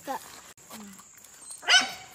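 One short animal call near the end, over a quiet background.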